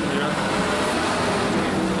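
Steady road traffic noise, a low even rumble of passing vehicles, with faint voices behind it.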